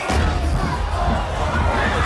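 A packed crowd shouting and screaming over loud music with heavy bass.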